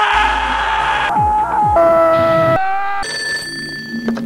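Clips from 1990s Surge soda TV commercials cut together in quick succession: a string of long held screams, each at a different pitch and cut off by the next, over music.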